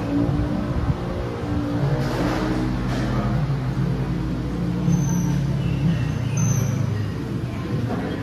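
A motor vehicle engine idling nearby, a steady low hum.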